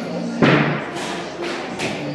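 A single sharp thud about half a second in, echoing in a large hall, over background music.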